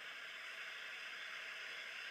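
Steady hiss and static from an old, noisy recording, heard in a pause between words.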